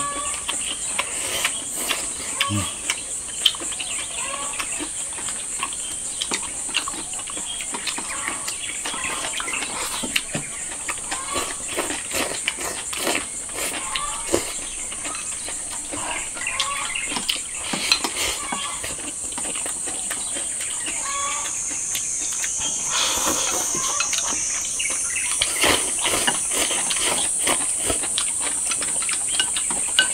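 Steady high-pitched drone of insects in the surrounding vegetation, shifting in pitch about two-thirds of the way through, with scattered small clicks of chopsticks against rice bowls and chewing.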